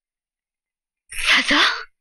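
A person's short, breathy vocal outburst, about a second in and lasting under a second, with a voice under the breath.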